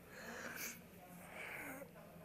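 Faint breathing from a man pausing to think, his hand held to his mouth: two soft breaths, one in each half.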